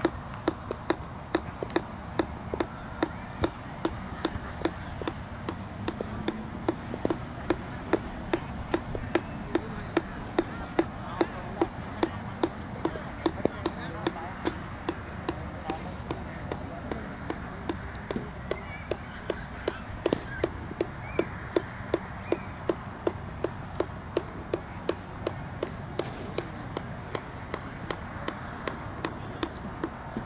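A steady mechanical ticking, sharp evenly spaced clicks about two a second, over faint distant voices and open-air background.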